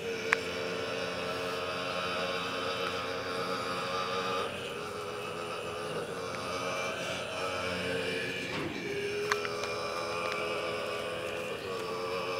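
Tibetan Buddhist ritual music: a steady, sustained drone of several held pitches that shifts a couple of times, with a few faint clicks.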